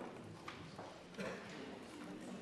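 Faint background hubbub of a parliamentary debating chamber: a low murmur of members' voices with a few scattered light clicks and taps from the desks.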